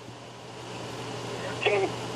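Steady hiss with a low hum: the open line of a video call while waiting for the other side to answer. A voice comes in faintly near the end.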